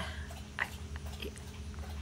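Faint wet mouth clicks and lip smacks as cream lip colour is brushed on and the lips are pressed together, over a low steady hum.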